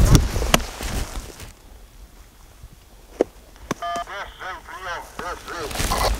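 Handheld two-way radio sounding a call: a short electronic beep about four seconds in, then a warbling, chirping call signal for nearly two seconds. Before it, wind and handling noise on the microphone with a few clicks.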